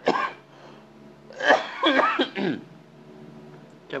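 A man clearing his throat: a short burst at the start, then a longer, louder one about one and a half seconds in.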